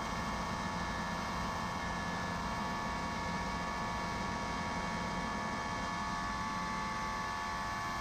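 Truck-mounted carpet-cleaning machine running steadily with its high-pressure pump engaged, set to about 1500 rpm: an even hum with a few held tones.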